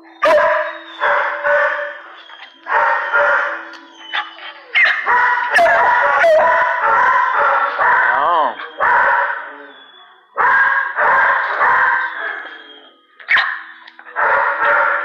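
Dogs barking in a shelter kennel area, in loud stretches of one to several seconds with short breaks between them.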